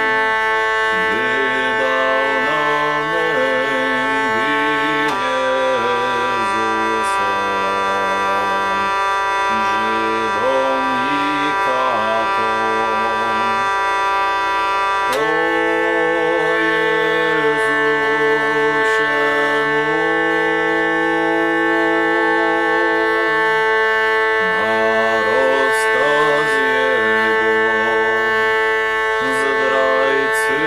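Hurdy-gurdy played solo: a steady buzzing drone under a wavering melody line. The drone changes about five seconds in, and a sharp new attack comes about halfway through.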